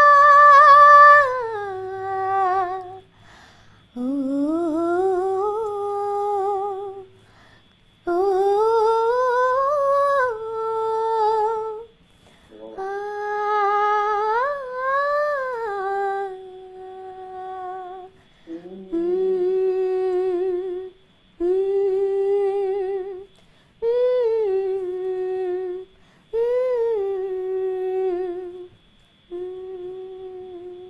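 A woman's voice singing a wordless melody, held notes with vibrato in phrases of two to three seconds broken by short breaths, some phrases sliding up before settling.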